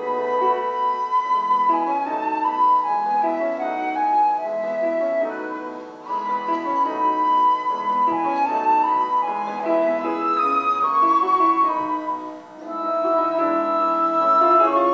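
Flute playing a melody of held notes over piano accompaniment, in phrases with short breaks about six and twelve seconds in.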